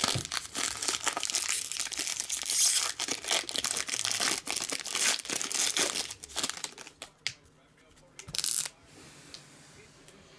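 Trading-card pack wrapper torn open and crinkled by hand: a dense crackle for about seven seconds, then one short crinkle near the end.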